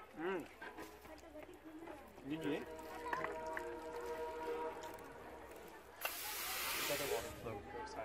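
Voices of people standing around, with a loud, sharp hiss about six seconds in that lasts just over a second.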